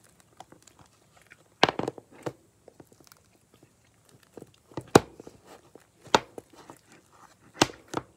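Fluffy slime being stretched and squeezed by hand, giving soft crackling and a few sharp pops of air bubbles bursting, the loudest about a second and a half in, near the middle and near the end.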